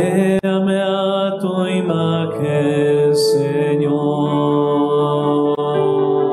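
A man singing a slow devotional hymn in long held notes, accompanied by sustained chords on an electric keyboard.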